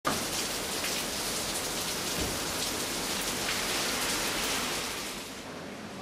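Steady rain falling, with scattered louder drops; it falls away a little past five seconds in.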